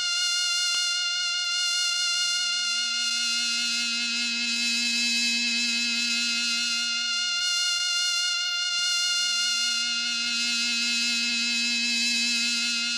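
Techno music with no beat: a sustained, buzzy synthesizer drone rich in overtones, with a lower note sounding in long stretches and dropping out briefly past the middle.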